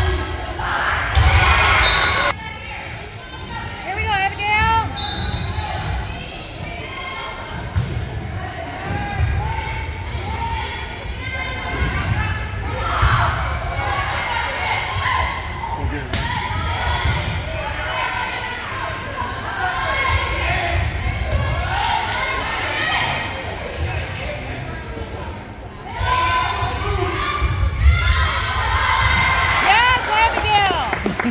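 Volleyball rally in a large, echoing gym. The ball thuds off players' arms and hands, sneakers squeak on the hardwood floor, and spectators' voices and cheers swell about a second in and again over the last few seconds.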